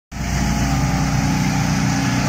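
Truck-mounted mist-cannon sprayer blowing disinfectant fog: a steady engine drone with a loud hiss of air and spray.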